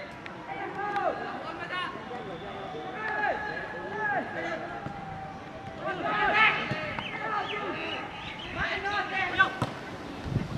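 Players and onlookers shouting and calling out during football play, with several voices overlapping. A sharp knock comes near the end.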